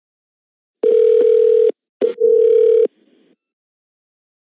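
Telephone ringing tone of an outgoing call: two loud, steady tones of about a second each with a short break between them and a click at the start of the second.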